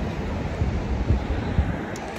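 Wind buffeting the phone's microphone: an uneven low rumble with no voices.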